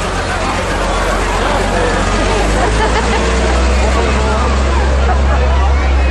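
A large vehicle's engine running slowly close by, a low steady rumble that grows louder about halfway through, under the chatter of a crowd.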